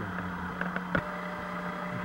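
A ratchet bar knocking once with a sharp metallic click about a second in, as it is set into the belt tensioner arm of a 2006 Dodge Charger, after a few lighter ticks. A steady low hum runs underneath.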